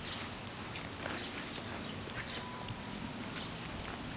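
An English bulldog puppy moving about in grass: faint scattered rustles and small ticks over a steady background hiss.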